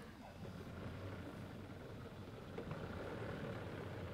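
Faint, steady hum of an electric motor running, growing slightly louder over the few seconds.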